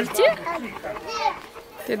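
A toddler's voice: short babbling sounds, with an adult starting to speak near the end.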